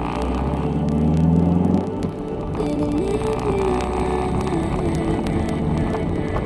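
Car engine heard from inside the cabin, accelerating from low speed, its pitch rising for a couple of seconds and then falling away sharply about two seconds in, as at a gear change. Music plays throughout.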